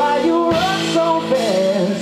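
A live rock band playing: electric guitars over a drum kit, with a lead melody line that bends and slides in pitch.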